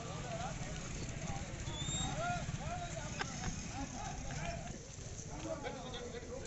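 Several men's voices talking over one another in a street crowd, not picked up as words, over a steady low rumble. There is one sharp click about three seconds in.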